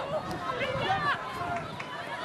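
Many overlapping voices on the ground: players calling out on the pitch and spectators shouting, a busy mix of short calls over a low murmur.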